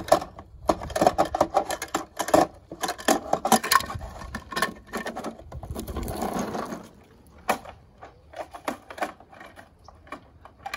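Plastic clicking and clattering from a hand-operated custom toy garbage truck's side-loader arm gripping and tipping small plastic trash cans, with a denser rattle about six seconds in as the contents spill, then a few sparse clicks.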